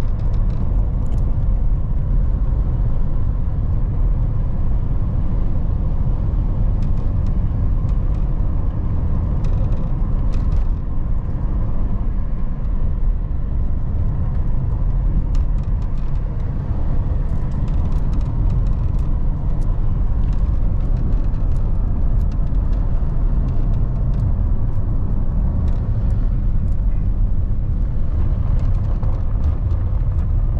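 A car heard from inside the cabin while driving on an unpaved dirt road: a steady low engine and tyre rumble, with scattered small clicks and rattles.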